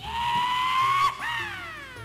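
A high, voice-like squeal that rises slowly for about a second, breaks off briefly, then slides down in pitch until the end.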